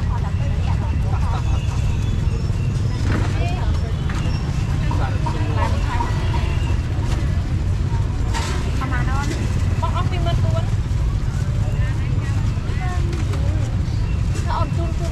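Busy outdoor street-market ambience: scattered voices of vendors and shoppers over a steady low rumble, with occasional light clatter from the stall.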